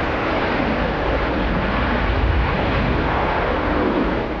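Su-57 fighter jet's twin engines at full afterburner during a takeoff climb, a steady jet noise.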